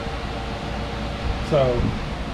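Steady whir and hum of a window air conditioner, with a low rumble underneath; a man's voice comes in near the end.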